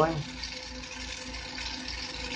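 Steady hiss of a Carlisle CC glassworking torch flame burning, with a faint hum underneath.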